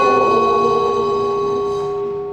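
Closing music: a struck bell rings out with a steady, clear tone that slowly fades.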